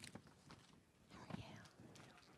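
Near silence in a meeting room, with faint murmured voices about a second in and a soft tick at the start.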